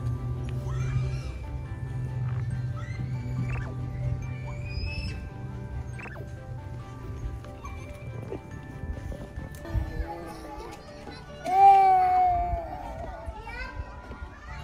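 Background music over children's voices, with one loud, high child's scream about eleven and a half seconds in that wavers and falls over about a second: an older girl shrieking.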